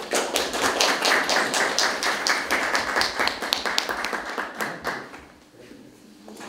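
A small audience clapping for about five seconds, dying away near the end.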